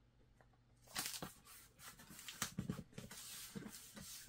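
Faint, irregular rustling and tapping of sticker paper and cardboard as a shipping-label sticker is lined up and pressed onto a pizza box lid, beginning after about a second of silence.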